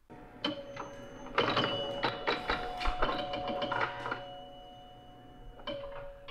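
Pinball machine sound effect: a rapid clatter of mechanical clicks and knocks over steady held tones, thinning out after about four seconds.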